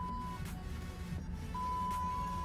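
A steady high-pitched electronic beep, one tone that stops shortly after the start and another that begins past the middle and holds for over a second, over a faint low hum and background music.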